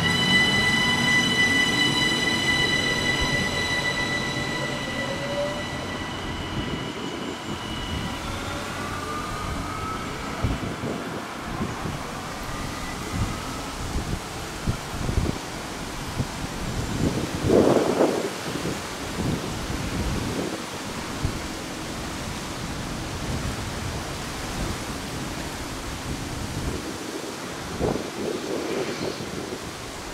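ÖBB Cityjet class 4746 (Siemens Desiro ML) electric train pulling away: its traction-motor whine climbs in pitch, holds on several steady notes and fades over the first several seconds as the train moves off. After that comes the train's fainter rolling noise, with a brief louder burst of rail noise about 17 seconds in and another near the end.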